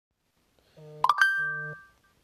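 An Android phone's electronic sounds: a short low buzz, then a couple of sharp clicks and a bright two-note chime that rings out and fades, with a second short buzz under it.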